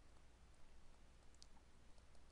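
Near silence: a faint low room hum, with a single faint tick about one and a half seconds in, from a stylus writing on a tablet.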